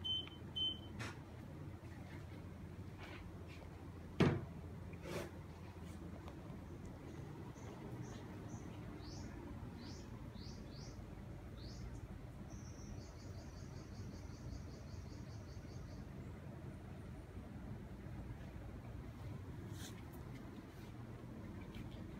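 Saijo Denki split-type air conditioner's indoor unit giving two short beeps as it takes a command from the remote, then its fan running steadily on high speed with a constant rush of air. There is a single thump about four seconds in, and faint high chirps and a short buzzing trill in the middle.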